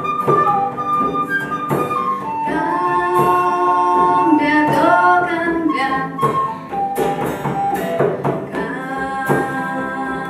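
Live acoustic Latin American folk song: a woman singing in Spanish over a strummed acoustic guitar, with a flute playing alongside and a hand-played frame drum keeping time.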